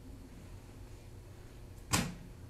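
Low steady hum of a classroom, with one short, sharp noise near the end.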